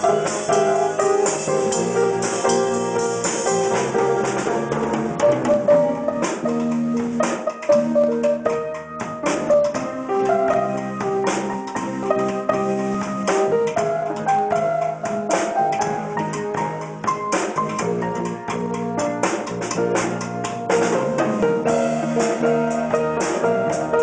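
A band playing an instrumental passage live in a room: a PDP acoustic drum kit with cymbal crashes and an electric guitar through a small amplifier, with held pitched chords underneath.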